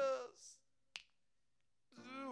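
A man's held sung note with vibrato ends just after the start, trailing into a short hiss. About a second in comes a single finger snap in the pause, then it is near silent until singing starts again at the very end.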